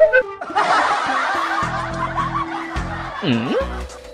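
A laugh-track sound effect of a crowd laughing, many voices at once, over background music with a steady beat. Near the end a short tone dips down in pitch and rises again.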